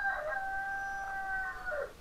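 A rooster crowing once, a single long call that holds its pitch and drops away at the end.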